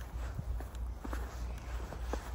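Footsteps crunching in fresh snow, a few irregular steps over a low rumble.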